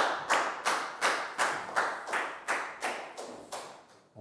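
Teacher and class clapping together in a steady rhythm, about three claps a second, growing quieter toward the end.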